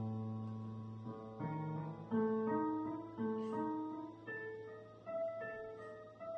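Digital piano playing a solo piece. A held chord fades away, then from about a second in, a line of single notes comes roughly two a second over a sustained low bass note.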